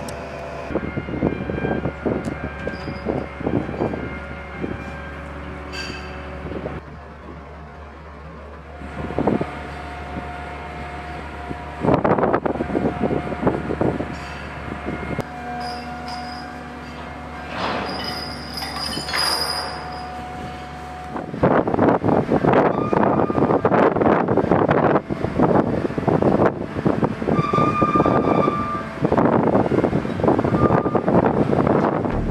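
Heavy machinery at a crane lift: a steady low drone with a held whining tone and intermittent metallic squeals and clanks. About two-thirds of the way through it gives way to louder, continuous rumbling noise.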